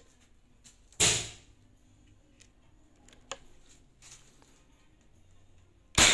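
A single shot from a PCP air rifle (Bocap Marauder Monolite with a 500cc tank, set to high power and firing heavy pellets) about a second in: a sharp crack that dies away over about half a second. A few faint clicks follow, and the next shot begins right at the end.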